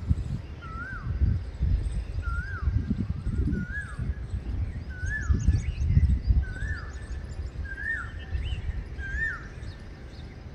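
A bird repeats a short whistled call that rises then drops, about eight times, roughly once a second, with a few faint higher chirps from other birds. Under it runs a louder, uneven low rumble.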